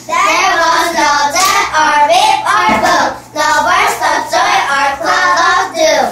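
Young girls singing a short song in English, loud and in several phrases.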